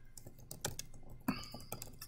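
Faint typing on a computer keyboard: a quick, uneven run of keystrokes, with one louder key strike a little past the middle.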